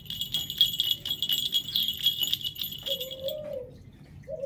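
Small bell on a dog's collar jingling steadily while the dog's neck is scratched, stopping about three and a half seconds in. Near the end a short, low call with a slight rise and fall.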